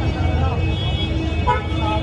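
Busy street noise: a steady low traffic rumble with voices of people around.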